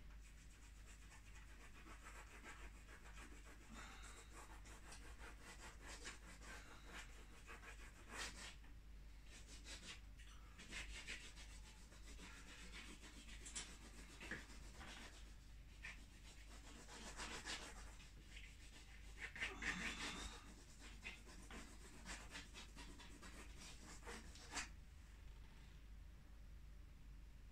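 Faint rubbing and scratching of conté crayon strokes on paper, irregular, with a few louder strokes, the loudest about twenty seconds in.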